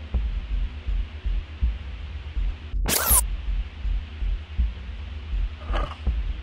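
A sharp click about three seconds in, picked up by a parabolic microphone dish as the dish moves on its tripod mount; a fainter click follows near the end. Under it runs a low, slow-pulsing music bed.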